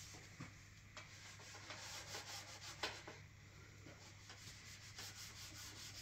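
Faint rubbing of a cloth applicator over a spalted beech board as oil finish is wiped on by hand, with a few light strokes standing out.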